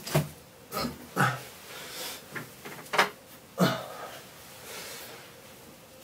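Handling noises: a few short knocks and rustles as a bag is rummaged through, spaced out over several seconds, with an occasional breath or low mumble between them.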